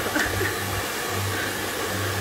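Hand-held hair dryer blowing with a steady hiss.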